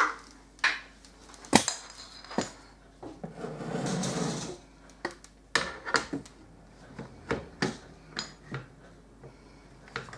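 The wooden stock of an M1 Garand being handled and fitted onto the rifle's barrelled action: a run of wooden and metal knocks and clicks, the sharpest about one and a half seconds in, with a scraping rub lasting about a second and a half around the middle.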